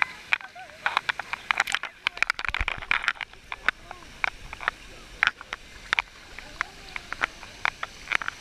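Water splashing and slapping against a waterproof action camera held at the surface by a swimmer: an irregular run of sharp splashes and clicks. Faint voices of other bathers underneath.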